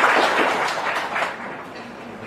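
Audience applauding, the clapping thinning out and fading away after about a second and a half.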